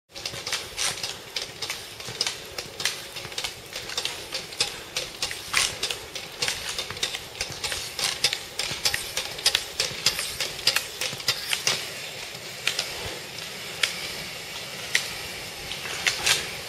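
Roller-ski pole tips striking asphalt in quick, uneven sharp clicks, several a second, over the steady rolling noise of roller-ski wheels on pavement. The clicks thin out over the last few seconds.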